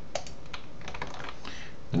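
A computer mouse clicking: one clear click just after the start, then a few fainter ticks, over a steady low hiss.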